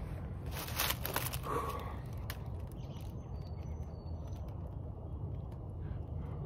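A person smoking a cigarette, with a short breathy rush of a drag or exhale about half a second in, over a steady low outdoor rumble. Faint high chirps come and go.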